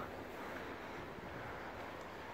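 Quiet, steady outdoor background noise: an even hiss with nothing standing out.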